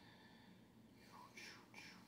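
Near silence: room tone, with a man faintly whispering a few words from about a second in.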